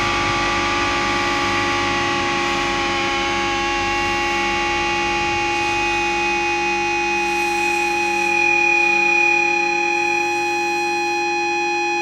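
Distorted electric guitar held on one sustained chord and ringing out with feedback, a steady drone with no drums, swelling slightly about eight seconds in.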